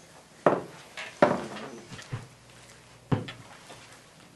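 Handling noise from a Fender Jazz Bass: three sharp knocks and clicks, about half a second, just over a second and about three seconds in, with a faint low hum between them, as the player handles the bass before playing.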